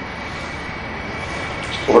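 Steady background hiss with a faint high whine, picked up through the microphone during a pause in a man's speech. A man's voice starts again near the end.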